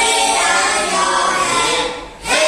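A class of children singing together in unison, holding long drawn-out notes, with the phrase fading just before the end.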